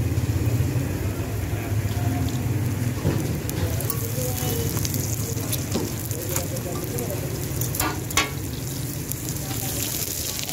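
Parathas frying in oil on a large flat iron griddle, a steady sizzle, with a metal spatula clicking and scraping against the griddle several times, mostly in the middle of the stretch.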